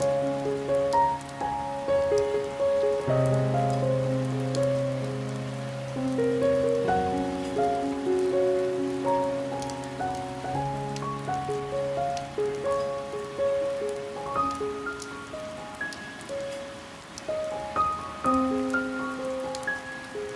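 Slow piano music, held notes ringing over low bass notes, played over steady rain with scattered raindrop ticks on a window pane.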